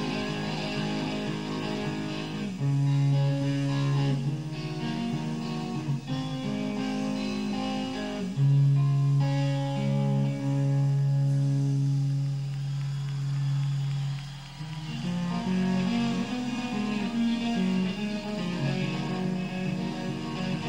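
Electric guitar played live on stage, with long sustained low notes held for several seconds and higher notes over them, changing to quicker shifting notes after a brief dip about three-quarters of the way in.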